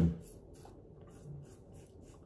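Safety razor with a Feather blade scraping through stubble in a series of short strokes over lathered skin. The whiskers can be heard cutting, which the shaver takes as a sign that the blade needs replacing.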